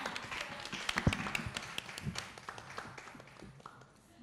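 Applause from a small audience: many separate hand claps that thin out and fade away over about three seconds.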